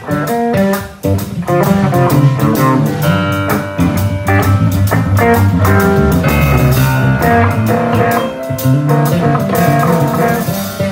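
Live band playing a blues-rock song: guitar over bass guitar and drum kit.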